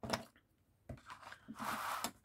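Light handling sounds of a steel ruler being set and held on a card hanging-file folder: a small tap at the start, then a soft rustle of card near the end.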